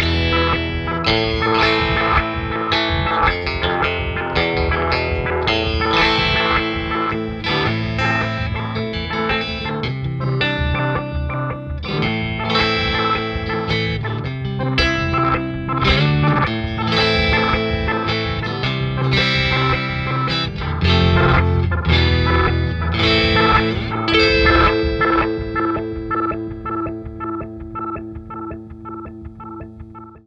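Electric guitar, a G&L Legacy, played through a Chase Bliss Thermae analog delay/pitch shifter: a fast stepped sequence of upper-octave pitch-shifted repeats that almost sounds like there's a lo-fi drum machine in the background. The playing and repeats fade out over the last few seconds.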